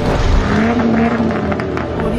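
Car engine sound effect: an engine note revving up about half a second in, then falling away, as in an animated car intro.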